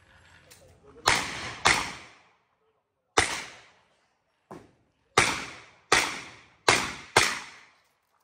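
A string of gunshots fired in uneven pairs and singles, seven loud cracks with a short echo after each and one fainter shot in the middle, as a competitor engages targets on a practical shooting stage.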